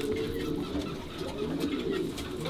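Racing pigeons cooing, a low wavering call.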